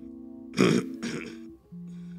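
Soft sustained keyboard chords held under the room, changing chord near the end. About half a second in, and again about a second in, short throaty vocal noises come close to the microphone, louder than the music.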